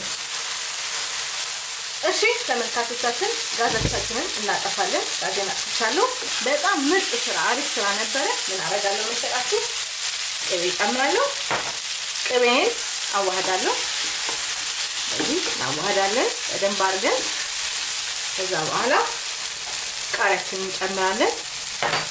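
Lamb, mushrooms and tomatoes sizzling steadily in a non-stick frying pan as the tomatoes cook down, stirred with a wooden spatula that scrapes and squeaks against the pan again and again.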